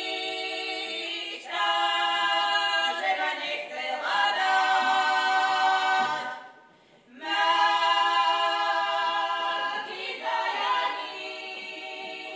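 Women's voices singing a Slovak folk song from Horehronie unaccompanied, in long held phrases. There is a short breath pause about six and a half seconds in before the singing resumes.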